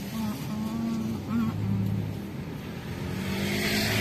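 Car cabin sound while driving: steady engine and road rumble, with a hiss that swells near the end as another vehicle passes close by.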